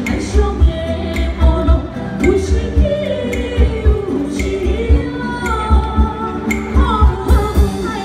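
Live Chinese-style song: female vocals carry the melody over a small traditional ensemble of bamboo flute, plucked lute and dulcimer, with a steady, evenly spaced low beat underneath.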